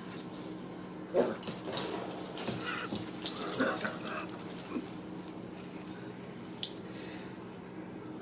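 Eight-week-old border collie puppy giving a run of short, high yips and whines while inviting an older dog to play, the loudest about a second in. A single sharp click comes near the end.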